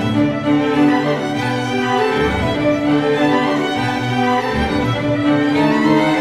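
A string orchestra of violins and cellos playing classical music, bowed notes held and moving under one another at a full, steady level.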